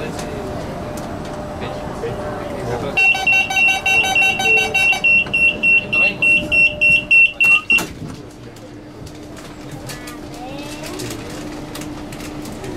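Commuter train's door-closing warning: a loud run of rapid electronic beeps, about four a second for nearly five seconds, changing to a single higher tone halfway through, then a knock as the sliding doors shut. Afterwards a low steady hum and rising whine from the electric train as it begins to pull away.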